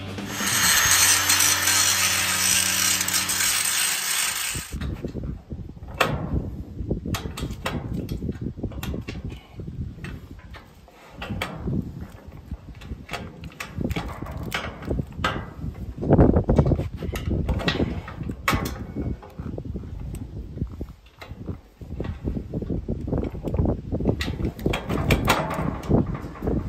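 Weld-on swivel trailer jack being cranked by hand, its gear and handle mechanism clicking and clunking irregularly. It starts after about four seconds of a loud steady whirring noise.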